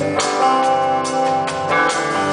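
Live band playing an instrumental passage between sung lines, with electric guitars and keyboards over the drums.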